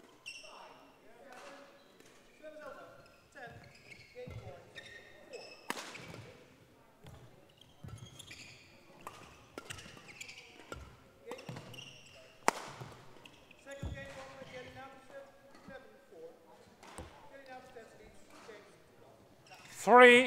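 Badminton rally on an indoor court: a series of sharp racket strokes on the shuttlecock, with the players' footwork on the court floor between them.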